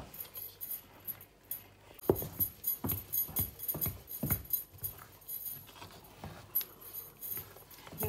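Bare hand kneading and slapping a wet rice-flour dough round a stainless steel bowl: irregular squelching slaps, loudest from about two to four and a half seconds in, with the gold bangles on the mixing wrist jingling.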